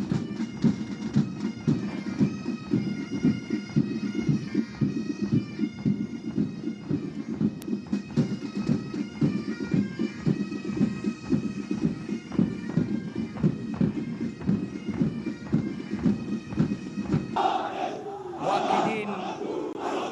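Pipe band playing a march: bagpipes sounding a melody over their steady drone, with a regular drum beat underneath. About three seconds before the end the music gives way to many men shouting together in unison.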